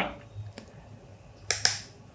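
Two sharp clicks a fraction of a second apart, about a second and a half in, with a fainter click before them: a Canon camera's power switch being turned off, which lets the camera start charging its battery over USB.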